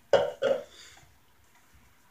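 A man's short two-part vocal sound, a throaty grunt, early on, then only faint room noise.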